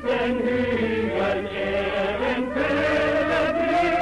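Choir singing slow, held notes in harmony.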